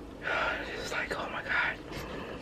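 A woman whispering a few breathy, unvoiced syllables.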